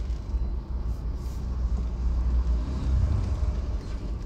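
Steady low rumble of a vehicle's engine and road noise, heard from inside the cabin while driving slowly in traffic.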